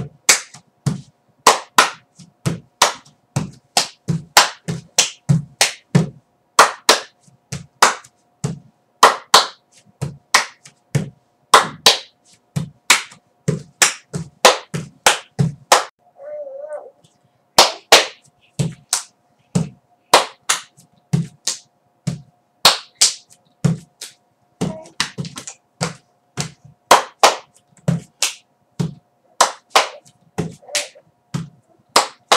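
Body-percussion dance: rhythmic hand claps mixed with slaps of hand on foot and foot stamps in a steady pattern, with a short pause about halfway through.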